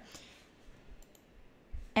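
A few faint, sharp computer mouse clicks against quiet room tone.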